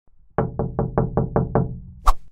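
Knocking on a door: a quick run of about seven even knocks in just over a second.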